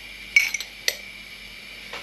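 Two brief clinks of a salt container being handled as salt goes into the pot: a short rattle about a third of a second in, then a sharp click about half a second later.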